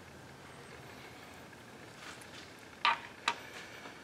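Two sharp clicks about half a second apart, late on, as the Kwikset lock cylinder plug with its key is handled.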